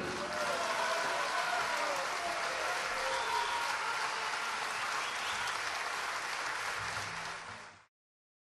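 Audience applauding at the end of the piece, with a few voices calling out, fading out near the end.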